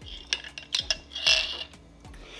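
A metal straw clinking against a glass mason jar several times as it is moved in an iced latte, then a short sip through the straw about a second and a half in.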